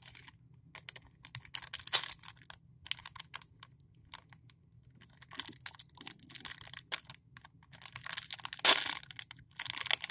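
Crinkling and crackling of a Pokémon card repack's plastic wrapper being handled and opened, in irregular bursts of small clicks, loudest near the end.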